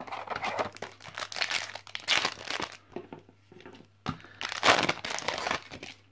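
Foil wrapper of a Yu-Gi-Oh! booster pack crinkling and tearing as it is opened. It comes in two spells, with a short lull about three seconds in.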